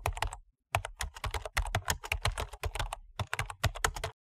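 Typing on a computer keyboard: a quick run of key clicks with two brief pauses.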